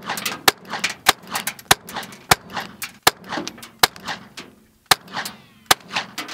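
.22 rifle firing a quick string of shots, the loudest about two a second, with fainter cracks between.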